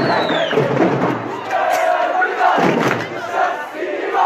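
Crowd of football supporters shouting and chanting. A dense wash of many voices thins after about a second into separate loud shouted calls.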